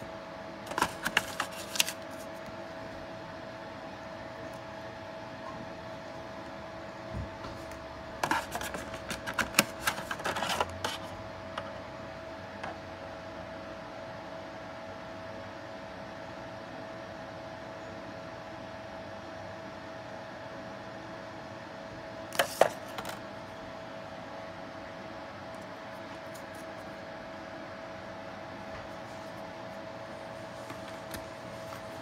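Handling noise from unpacking a boxed doorbell kit: three short bursts of clicks, taps and light rattles as cardboard, a paper card and a metal mounting plate are moved. A faint steady hum runs underneath throughout.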